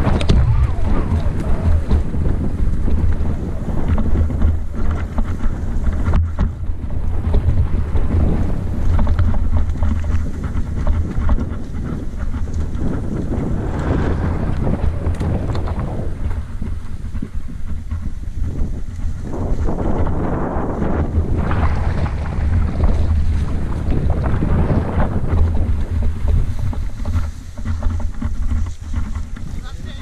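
Wind buffeting the microphone of a handlebar-mounted camera as a mountain bike descends a rough dirt track, with a deep continuous rumble and the bike rattling over the bumps. Irregular small knocks come from the bumpy ground.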